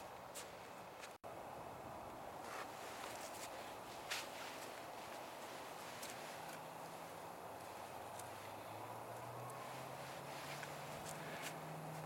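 Wet sticks burning in a StoveTec rocket stove: a faint steady hiss with a few scattered light crackles and clicks, and a faint low hum coming in about halfway.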